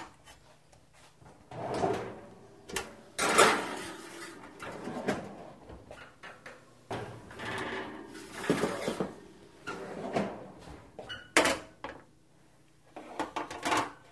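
An oven door being opened and shut and a roasting pan slid in, with a run of separate scraping and clattering sounds and a sharp knock near the end.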